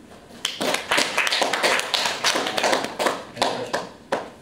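Applause from a small audience of a few people: uneven hand claps that start about half a second in and stop just before the end.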